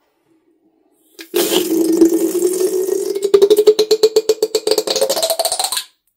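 After a short click about a second in, slime is squeezed out through the cut tip of a rubber balloon, the stretched rubber neck vibrating in a loud buzzing tone with a fast flutter that slowly rises in pitch, stopping suddenly just before the end.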